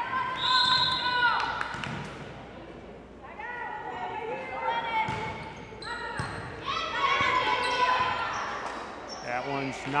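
Volleyball rally on a hardwood gym court: sharp thuds of hands hitting the volleyball and repeated sneaker squeaks on the floor, with voices in the gym.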